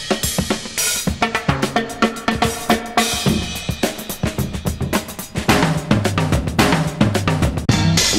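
A drum kit playing a beat of bass drum, snare, hi-hat and cymbal, with low pitched notes underneath, in a music mix.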